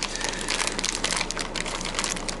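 Clear plastic packet of fishing lures crinkling as it is handled and turned in the hands, a steady run of irregular crackles.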